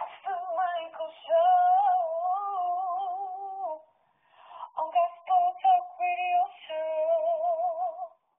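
A single voice singing long held notes with a wavering pitch, breaking off briefly about four seconds in: the sung jingle of a radio show.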